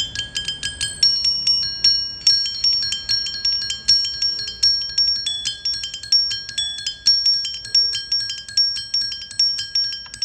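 Mallet-played sonic sculpture: a quick, steady run of struck notes, about three to four a second, each ringing high and bell-like and overlapping the next.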